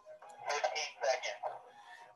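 Faint speech, quieter and thinner than a nearby voice, as if played back through a speaker, from about half a second to a second and a half in.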